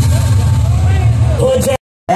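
Loud DJ music through large speaker-box stacks, with heavy steady bass and a voice shouting or singing over it. The sound cuts out abruptly near the end.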